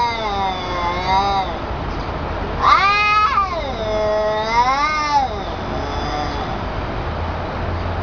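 Two cats caterwauling at each other in a territorial face-off: long, drawn-out yowls that waver up and down in pitch. The loudest starts with a sharp rise a little under three seconds in and lasts over two seconds.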